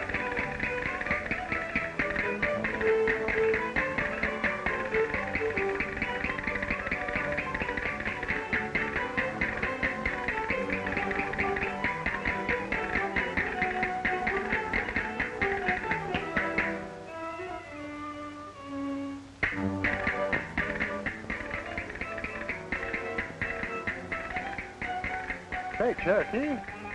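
A small Spanish-style string band of guitars and other strings plays a lively fandango, with a fast, steady clatter of percussive taps over it. About seventeen seconds in the playing thins to a few quiet held notes, then comes back in full about two and a half seconds later.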